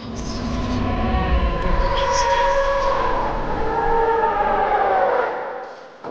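Film soundtrack: a sustained low rumble with several slowly wavering, gliding tones, fading out near the end.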